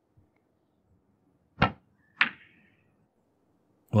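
A snooker shot: two sharp clicks about half a second apart, first the cue tip striking the cue ball, then the cue ball striking an object ball.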